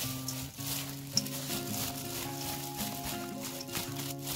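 Wet rustling and squishing of perilla leaf shoots being tossed by a plastic-gloved hand in a stainless steel bowl, repeated with each stroke of the hand, over background music with held notes. A short sharp click about a second in.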